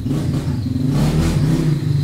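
A motor vehicle engine running loud and low, its pitch lifting slightly about a second in.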